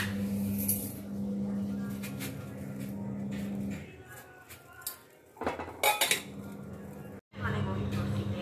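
Stainless-steel kitchen vessels clinking and scraping as pots and a tumbler are handled on a gas stove, with a cluster of sharp clinks about five and a half seconds in. A steady low hum runs underneath, stopping a little under four seconds in and coming back about two seconds later.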